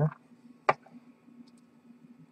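A single light click a little under a second in, with a few fainter ticks after it, from the small plastic connector and its lead being handled on the bench, over a faint steady low hum.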